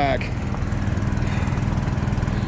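An engine running steadily with an even low drone while liquid fertilizer is pumped into the planter's tanks.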